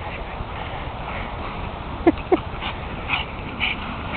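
A pug making two short, sharp sounds about two seconds in, a quarter second apart, each falling in pitch.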